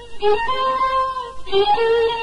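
Solo violin playing Persian classical music: a few long bowed notes, each joined to the next by a short slide in pitch.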